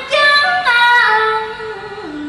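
A solo voice singing a cải lương (Vietnamese reformed opera) line, holding long notes that slide down in pitch in steps.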